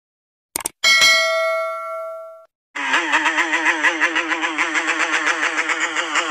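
A subscribe-button sound effect: a couple of mouse clicks, then a bell ding that rings out and fades. About three seconds in, a loud wavering drone that pulses about five times a second starts and keeps going.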